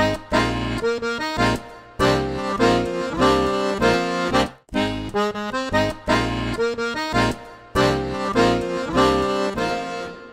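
Solo accordion playing chords over a bass line in short phrases with brief pauses between them, fading out near the end.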